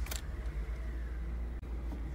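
Car engine running at idle just after being started, heard from inside the cabin, with a brief sharp noise right at the start.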